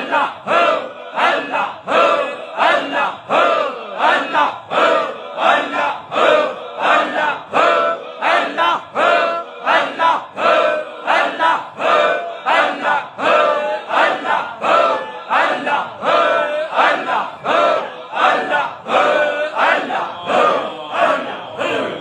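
A gathering of voices chanting dhikr in unison, a short phrase repeated in a steady rhythm of about two chants a second. The chant breaks off at the very end.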